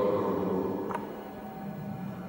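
Large-hall room tone: a voice's echo dies away at the start, and a low steady hum runs under it. About a second in comes a single faint click from the laptop as the slide is advanced.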